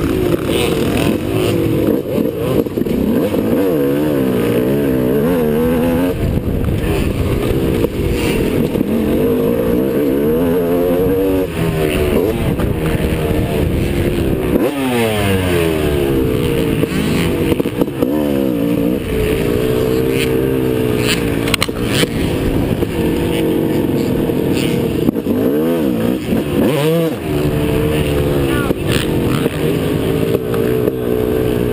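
Motocross bike engine revving hard and dropping off again and again as the rider accelerates, shifts and rolls off for corners and ruts. Heard from a helmet-mounted camera, with wind rushing on the microphone.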